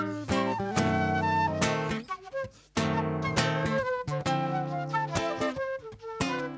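Instrumental break of an acoustic song: acoustic guitar strummed while a silver concert flute plays the melody in held notes. The music drops out briefly about two seconds in, then starts again.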